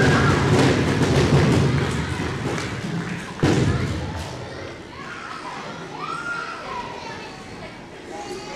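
Audience in a school hall clapping and calling out, with a single sharp thump about three and a half seconds in, then settling to quieter children's voices and chatter.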